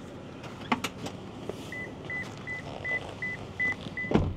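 A Toyota's dashboard warning chime: a steady series of short, identical high beeps, about three a second, starting a little under halfway through. A few sharp clicks come just before it, about three-quarters of a second in.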